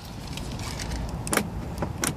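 Car's power door lock actuators clunking as the remote key fob works the door locks, a sharp click about a second and a half in, over faint handling noise.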